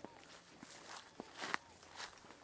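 Quiet footsteps through dry grass and brush: a few soft steps, with a slightly louder rustle about one and a half seconds in.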